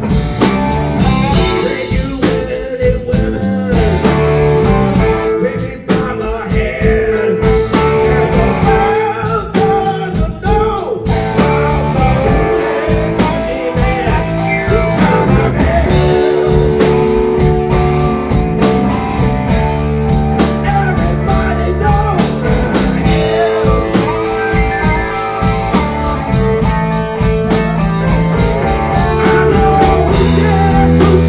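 Rock and roll band playing: a man singing over electric guitar and drum kit, blues-flavoured, without a break.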